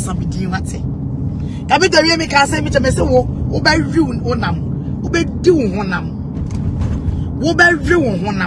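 Speech in short phrases over a steady low rumble of car cabin noise, as heard from inside a car.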